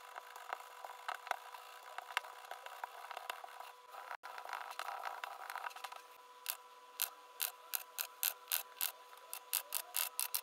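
Hands rolling dough into a log on a smooth worktop, with soft rubbing and small taps. From about six and a half seconds a stainless-steel bench scraper chops down through the dough log, clicking sharply on the worktop about a dozen times, the chops coming faster toward the end.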